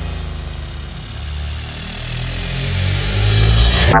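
Electronic music intro: a dense, noisy synthesized swell over low droning bass tones, growing louder and brighter over the last second and cutting off suddenly.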